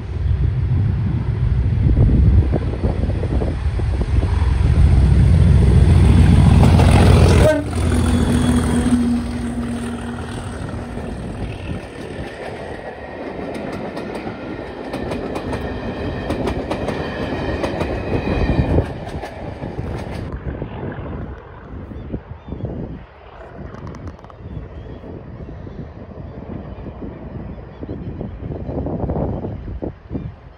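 Class 37 diesel locomotive, with its English Electric V12 engine, hauling a rake of coaches past at speed. A loud engine rumble peaks in the first seven or so seconds, then the coaches roll by with clattering wheels until about twenty seconds in. Wind noise follows.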